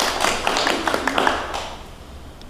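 Small group applauding by hand, a dense patter of claps that thins out and fades over the second half.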